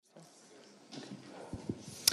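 Faint lecture-hall room noise with a low audience murmur that grows louder about halfway through, and two or three short low knocks near the end.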